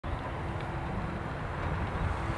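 Steady low rumble of outdoor background noise, with a faint steady hum above it.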